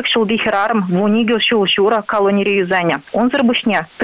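A woman speaking over a telephone line, her voice thin and narrow as through a phone.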